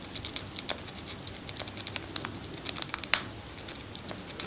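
Chipmunk nibbling pomegranate arils held in its paws: a rapid run of small, crisp clicks and crunches, with one sharper crunch about three seconds in.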